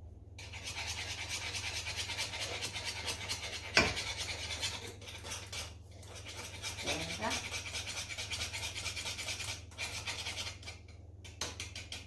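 A utensil scraping rapidly and continuously around a small saucepan as teff batter is stirred on the hob, with one sharp knock about four seconds in. The scraping eases off shortly before the end.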